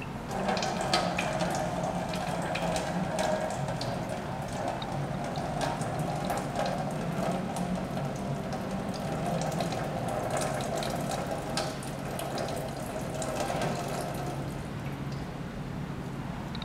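Water running steadily from a tap through an opened solenoid valve and flow sensor, starting just after the start and easing off near the end.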